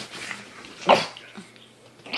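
Adult pug giving one short, loud growl about a second in.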